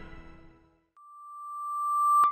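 A single steady electronic tone, a pure high beep-like pitch, starts about a second in after a brief silence and swells steadily louder: a synthesized transition tone leading into intro music.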